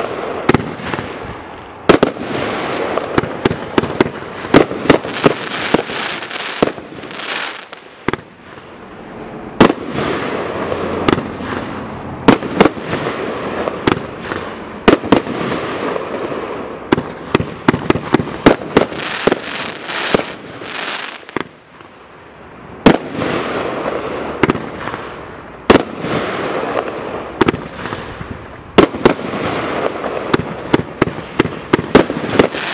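Total FX Caged Panther Pro firework cake firing a rapid barrage: many sharp bangs as shots burst, over a continuous rushing hiss. The barrage eases briefly twice, about 8 and 22 seconds in, before picking up again.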